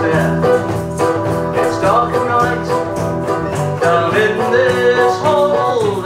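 Folk band playing a song live: strummed acoustic guitar over a steady electric bass line, with a voice singing the melody.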